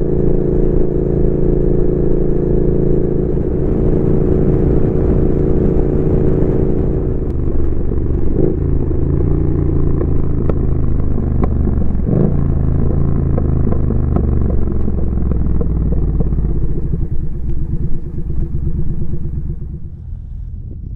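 2017 Triumph Street Twin's 900 cc parallel-twin engine running through a Termignoni 2-into-1 full exhaust while riding on the highway, steady at cruising speed with two brief dips in pitch about eight and twelve seconds in. The engine sound fades near the end.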